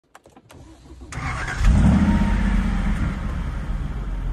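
A vehicle engine started with its push-button ignition. After a few faint clicks, it starts about a second in and settles into a steady idle.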